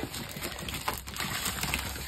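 Plastic mailer bag rustling and crinkling as it is pulled off a long cardboard box, with a few small clicks and knocks of the box being handled.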